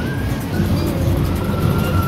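Steady low rumble of carnival ride machinery with music playing over it.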